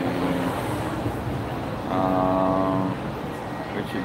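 Street traffic on a city street, a vehicle passing, with a steady held tone for about a second midway.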